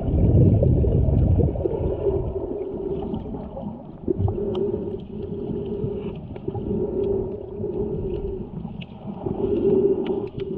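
Muffled underwater water movement picked up by a submerged camera: low rumbling and sloshing, loudest in the first second and a half, with a wavering hum that comes and goes and scattered faint ticks.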